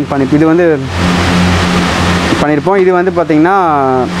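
A man speaks briefly, then for about a second and a half a steady rushing hiss with a low mechanical hum fills the gap before he speaks again; a faint steady hum runs under his voice.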